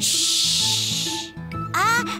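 A loud, drawn-out "shhh!" hush from the cartoon characters, lasting about a second, over background music. Near the end a short voice sound rises in pitch.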